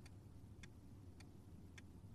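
Near silence with four faint, evenly spaced ticks, about one every 0.6 s.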